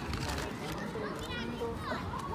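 Children's voices at play in the background: scattered high-pitched calls and chatter from a group of kids, with a higher shout a little past the middle.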